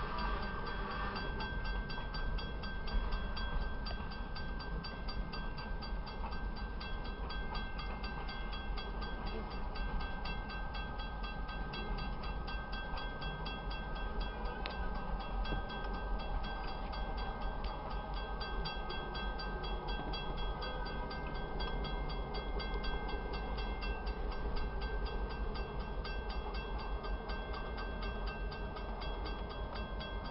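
Freight train rolling past a grade crossing: a steady rumble and rattle of the cars, with a steady high-pitched tone above it.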